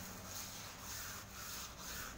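A mason's steel trowel scraping and spreading mortar on concrete blocks, in a few short strokes about half a second apart.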